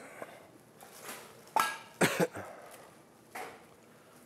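A person coughing a couple of times, short and sudden, about halfway through.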